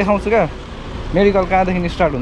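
Speech only: a man talking in two short phrases with a pause between, over a steady low background rumble.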